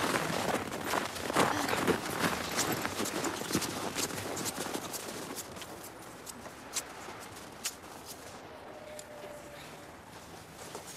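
Footsteps crunching in snow: a loose run of short, sharp crunches that fade as the walkers move off.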